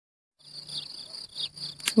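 Insects chirring outdoors, a steady high-pitched sound that starts about half a second in.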